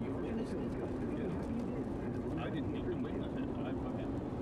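Steady road noise inside a car driving on a rain-soaked highway, tyres running on wet pavement, with indistinct talking over it.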